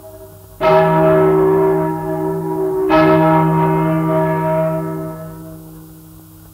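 Two strokes of a single large church bell, the 1155 kg Our Lady of the Assumption bell cast in 1871, a little over two seconds apart. Each stroke rings and fades, and the slow, isolated strokes fit the death knell tolled on that bell. The sound comes from a 78 rpm disc recorded in 1943, with surface hiss and a low hum under the bell.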